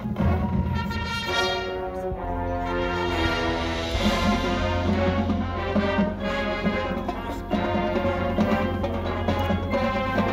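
High school marching band playing brass-led music with percussion, heard from the stands. A falling stepwise line in the first few seconds gives way to a fuller, brighter swell about four seconds in over a steady low bass.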